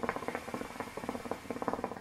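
Water bubbling rapidly in a hookah base as a long pull is drawn through the hose.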